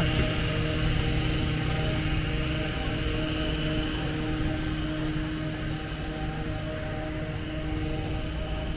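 A hedge trimmer's small engine running at a steady pitch, slowly fading over the few seconds.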